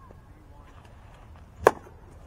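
A single sharp crack of the baseball being met as the batter swings at the pitch, about three-quarters of the way through, over faint field background.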